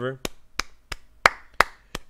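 Five slow, sharp hand claps, about three a second, the fourth and fifth the loudest.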